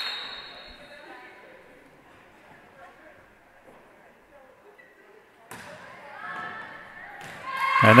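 Volleyball being played in a large, echoing gym: a few faint ball thuds in a hush. Then, from about five and a half seconds in, players' and spectators' voices rise and grow loud near the end as the serve lands for an ace.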